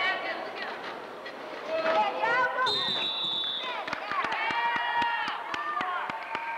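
Voices calling and shouting across a gym, with one steady, high referee's whistle blast lasting about a second near the middle. A quick run of sharp knocks follows in the second half.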